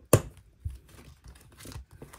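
A sharp snap just after the start, followed by softer paper rustling and light knocks as planner refill pages are handled.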